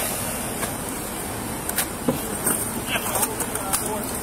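Steady outdoor background rumble on body-worn camera microphones, with a few small clicks and knocks and faint voices in the distance.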